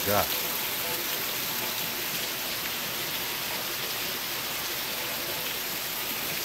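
Heavy rain pouring down steadily, an even hiss with no letup.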